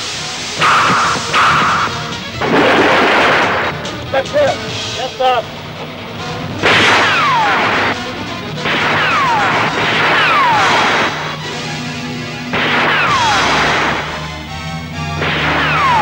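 Dramatic film background score under fight sound effects: repeated noisy hits and crashes, with several falling swoops, each dropping in pitch over about a second.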